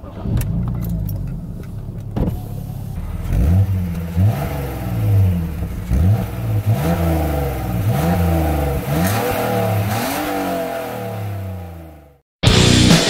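A BMW E46 325's 2.5-litre straight-six starting and idling, then revved in a series of quick throttle blips, about one a second, heard at the tailpipes before it drops away near the end. The exhaust has two holes drilled into the rear silencer, which makes it slightly louder with a noticeable bass note.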